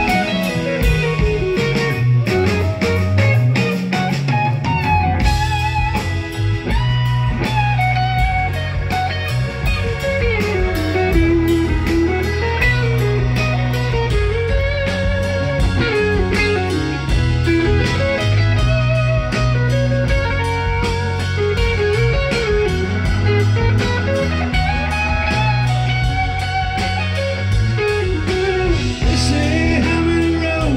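Live blues-rock band playing: a lead electric guitar line with bends and vibrato over bass, drums and keyboards, heard from the audience.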